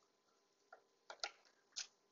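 Near silence broken by about four short, sharp clicks in the second half.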